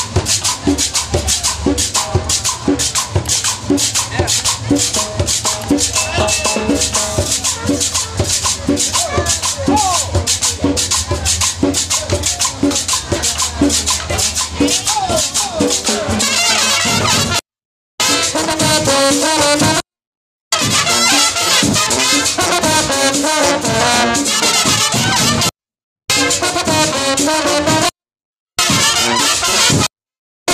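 A brass marching band playing: trumpets, trombones and a sousaphone over drums and rattles. For about the first half a fast, steady percussion beat and held bass notes lead. From about halfway the brass melody comes to the front, and the sound cuts out briefly four or five times.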